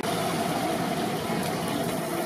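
A steady, unchanging engine hum, like a motor idling.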